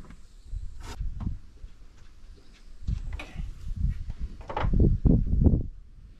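Handling noises: scattered knocks and rustles as parts are taken out of a cardboard box, with a cluster of heavier thumps about four and a half seconds in.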